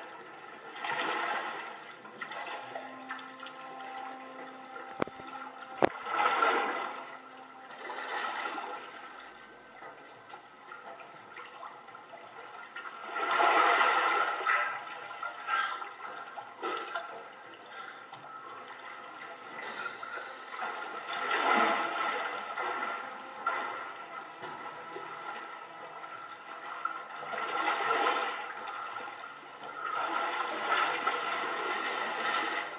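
Rushing, splashing water from a film soundtrack heard through a TV's speaker, swelling and fading about five times, with a couple of sharp clicks early on.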